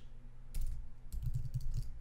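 Keystrokes on a computer keyboard: scattered clusters of quick key taps as a line of code is typed, over a faint low hum.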